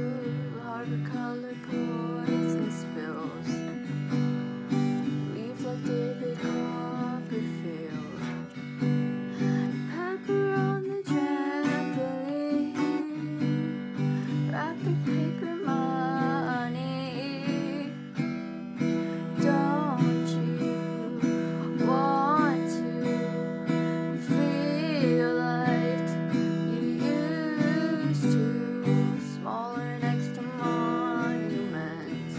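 A girl singing over her own strummed acoustic guitar.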